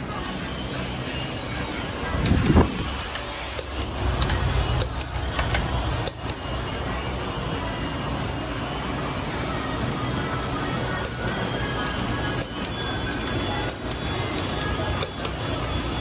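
Busy car workshop background noise with a low rumble, broken by scattered sharp metallic clicks and knocks, the loudest coming about two to six seconds in. Music plays faintly underneath.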